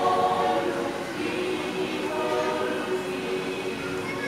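A choir singing together in long held chords, the notes changing about once a second.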